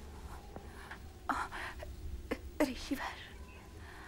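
A person's voice: a few short, soft utterances over a steady low hum.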